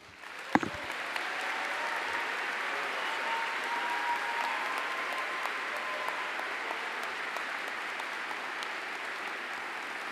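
An audience applauding steadily after a speech, the clapping swelling within the first second and then holding. A single sharp thump sounds about half a second in.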